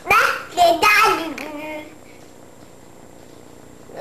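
A toddler babbling in a sing-song voice, the pitch sliding up and down, falling quiet about two seconds in.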